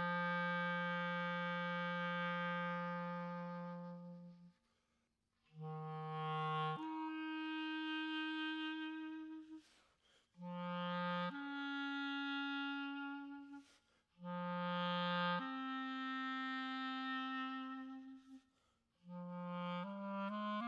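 Unaccompanied clarinet playing slow, long-held notes. Each phrase opens on a low note and leaps up to a higher held note, and short silences of about a second separate the phrases.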